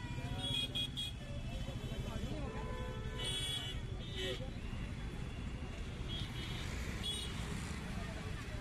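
Busy street traffic: scooter, car and auto-rickshaw engines running steadily, with a few short horn toots and the chatter of passers-by.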